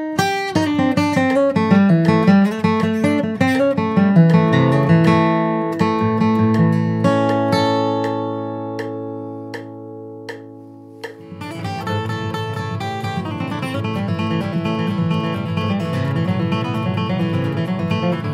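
Steel-string acoustic guitar, capoed at the second fret, flatpicking a bluegrass lead line in quick single notes. About six seconds in it settles on a G chord that is left to ring and fade, with faint metronome clicks ticking over it. From about eleven seconds in, steady strummed guitar music takes over.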